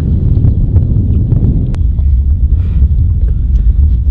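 Wind buffeting the microphone, a loud steady low rumble, with a few faint knocks from handling.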